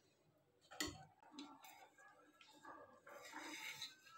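Faint clinks and scrapes of a steel spoon against a stainless steel pan as a mathri is turned and lifted out of sugar syrup, with one sharper tap about a second in and a few lighter ticks after it.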